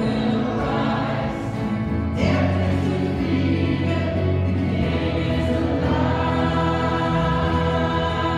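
Congregation singing a recessional hymn in a church, over held notes of an accompaniment.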